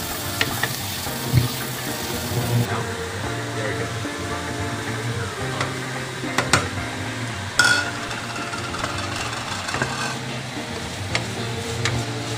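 A wooden spoon stirs onion and chicken frying in a metal pot, with sizzling and a few sharp knocks of the spoon against the pot, the loudest about seven and a half seconds in.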